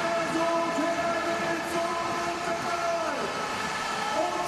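A horn blowing one long steady note over arena crowd noise, sagging in pitch as it ends after about three seconds.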